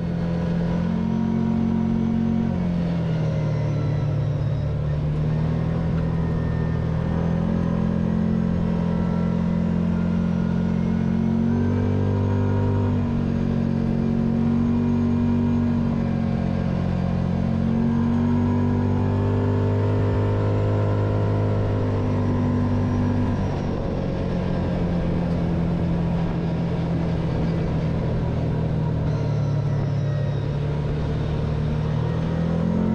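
Kawasaki Teryx4 side-by-side's V-twin engine running under load on a dirt trail, heard from the driver's seat; its note rises and falls several times with the throttle, easing off about 23 seconds in.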